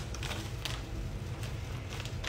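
Plastic cat-treat pouch crinkling and rustling as it is handled, with a few irregular crackles.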